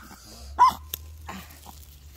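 Chihuahua giving one short, high yip about half a second in, followed by a faint click.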